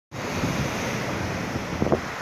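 Wind buffeting the microphone over the steady wash of choppy sea breaking on a rock breakwater, with a short thump near the end.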